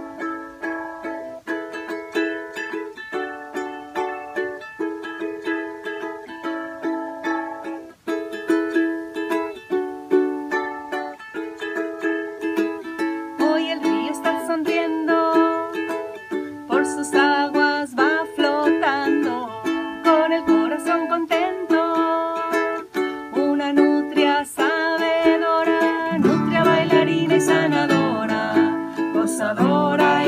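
Ukulele and acoustic guitar playing a lively strummed song; a woman's and then a man's voices join in singing partway through, and the sound grows fuller near the end.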